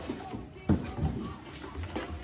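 A cardboard shoebox being shaken out of its shipping carton, with one sharp cardboard knock about two-thirds of a second in, then cardboard rubbing and shuffling.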